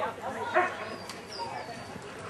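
A dog barks once, about half a second in, over the chatter of spectators talking.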